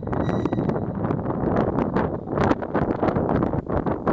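Gusty wind buffeting the microphone in uneven surges, over a steady low rumble from an NS mDDM double-deck electric train.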